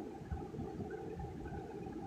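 Faint, steady low background rumble of room tone with no distinct sound event.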